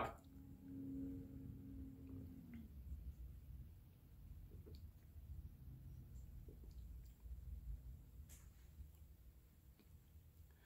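Near silence, with faint sipping and swallowing from a glass of soda and a few soft clicks scattered through. A faint low steady hum runs through the first two and a half seconds.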